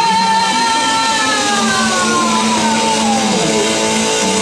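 Live rock band with electric guitars and drums: a long held high note slides steadily down in pitch, starting about a second in and falling for about two and a half seconds, while the band sustains underneath.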